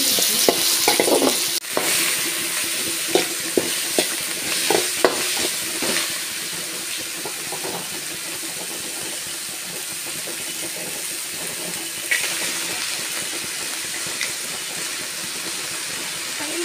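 Chopped onion, tomato and green chilli sizzling in oil in a metal kadai, with a metal spoon scraping and knocking against the pan several times in the first six seconds. After that a steadier sizzle as chopped leafy greens fry in the pan.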